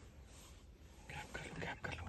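Faint whispering voices, a few short hushed syllables in the second half.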